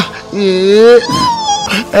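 A man's long, whiny vocal moan, then a shorter high-pitched whine that falls away: a fearful, whimpering wail.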